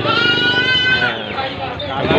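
A goat bleating: one long, high bleat of about a second that rises slightly in pitch, at the start.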